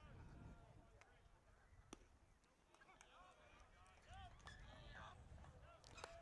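Near silence: faint distant voices, with a single faint click about two seconds in.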